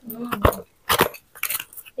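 Cardboard gift box being opened by hand: a couple of sharp clicks about half a second apart, with a short low voice-like call at the very start.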